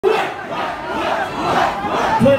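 Concert crowd yelling, many voices at once.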